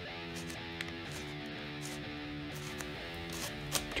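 Background guitar music playing a steady run of notes, with a few faint plastic clicks of a MoYu MF9 9x9 cube's layers being turned.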